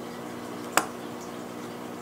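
A single sharp tap of a plastic fountain pen being handled on the tabletop, about three-quarters of a second in, over a steady low room hum.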